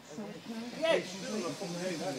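Men's voices talking, with a faint steady hiss behind them from about halfway.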